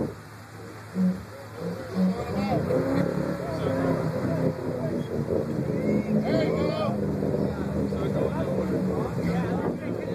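Vehicle engine running steadily as a Chevy Blazer works in deep, sticky mud, getting louder about a second in, with people talking over it.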